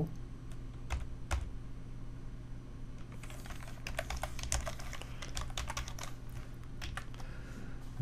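Typing on a computer keyboard: two keystrokes about a second in, then a quick run of keystrokes from about three seconds in, over a low steady hum.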